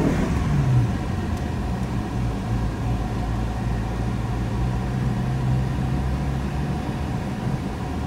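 Car's engine and road noise heard from inside the cabin as it climbs a parking ramp: a steady low rumble with a constant engine hum.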